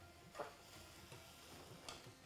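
Metal ladle stirring vegetables in an aluminium pressure-cooker pot, faint, with two short knocks of the ladle against the pot about a second and a half apart.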